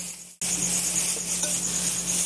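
Crickets chirping steadily in a pulsing, high-pitched chorus over a faint steady low hum. The sound drops out briefly just under half a second in, then carries on.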